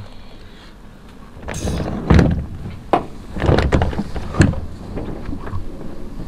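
Irregular clunks and clicks of a light aircraft's sliding cockpit canopy and its latches being handled, a Zlin Z-142: about six or seven separate knocks starting about a second and a half in.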